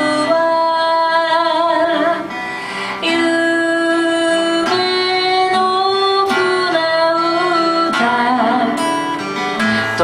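A woman singing in long held notes, accompanying herself on a strummed acoustic guitar.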